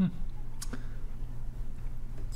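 A brief "hmm", then two faint clicks close together about half a second in, over a steady low hum.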